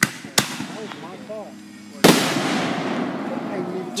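Fireworks going off: two sharp bangs less than half a second apart, then about two seconds in a louder burst followed by a long hiss that slowly fades.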